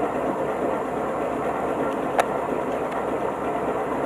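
Off-road 4x4 engine running steadily at low speed on a rough trail, with a single sharp knock a little over two seconds in.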